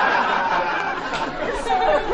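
Several voices talking over one another in a jumbled chatter, thinning out toward the end.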